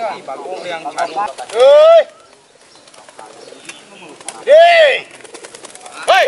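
Two loud, drawn-out shouts from men, each rising and falling in pitch and lasting about half a second, come about a second and a half in and again near the end, over crowd chatter. They are pigeon handlers calling to the racing pigeons.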